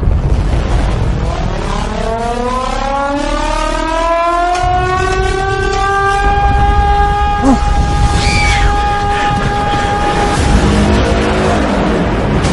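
A civil-defence warning siren winds up in pitch over several seconds, then holds a steady wail before stopping shortly before the end, sounding the alarm for an oncoming tsunami. A deep rumble of the film soundtrack runs underneath.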